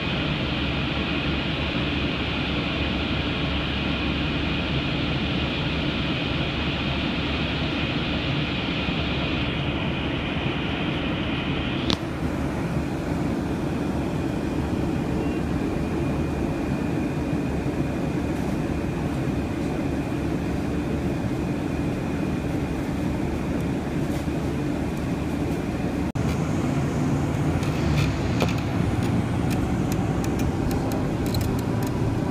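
Steady running noise inside a moving vehicle, a low rumble with a faint high steady whine. A single sharp click comes about twelve seconds in.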